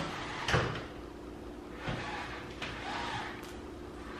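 A few soft knocks and rustles from a pleated window shade being pushed aside by hand, the sharpest knock about half a second in.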